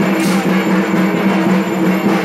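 Music with steady, held low notes and a background haze.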